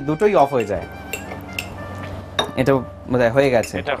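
A few light clinks of a utensil against small serving bowls, with sharp ticks in the quieter stretch between about one and two seconds in.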